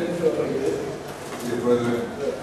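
Indistinct men's voices talking in a meeting room, with words too unclear to make out.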